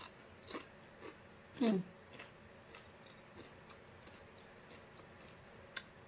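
Matzah being bitten and chewed: soft crunches, a little louder in the first couple of seconds, then fainter chewing clicks. A short "mm" of enjoyment about a second and a half in.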